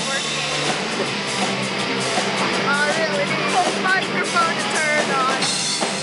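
Live rock band playing: drum kit and electric guitars with a horn section, a lead melody line sliding up and down in pitch through the middle of the passage.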